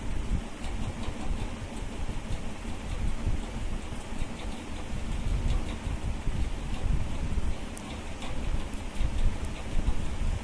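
Steady rushing noise with a heavy, fluctuating low rumble.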